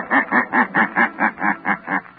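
A man's deep, sinister laugh, the radio character The Shadow's signature laugh, a rapid run of 'heh-heh-heh' syllables about five a second that cuts off abruptly at the end.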